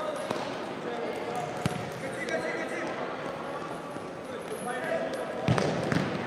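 Futsal ball being kicked on an indoor court, with a sharp thud about a second and a half in and a louder one near the end, ringing in a large echoing hall over the chatter of players and spectators.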